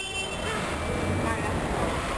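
Background noise of a busy gym with indistinct voices and a low rumble; a high-pitched ringing tone cuts off about half a second in.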